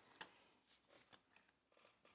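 Near silence broken by a few faint clicks and rustles of things being handled and moved while an item is searched for.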